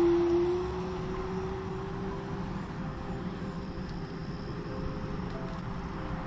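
Electric bike motor whining as the bike rides along a paved trail, over steady wind and tyre noise; the whine rises slightly in pitch and fades out after about two and a half seconds.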